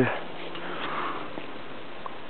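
A person's breath close to the microphone, a soft swell about a second in, over a steady hiss.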